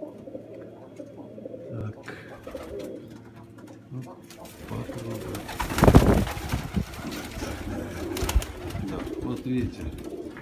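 Many domestic pigeons cooing together in a small enclosed loft, a steady overlapping murmur of low calls. About six seconds in, a loud, brief burst of noise breaks over the cooing.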